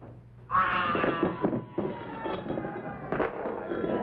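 A comic baby-crying sound effect starts suddenly about half a second in and holds one high, wailing note, sinking slightly in pitch. Crackling audience noise runs underneath it.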